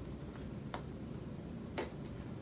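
Oxford punch needle punching yarn through a woven seagrass basket: two short clicks about a second apart.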